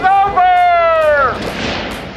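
A person's long high-pitched yell, held for about a second and a half and falling slowly in pitch, then a brief rushing noise near the end.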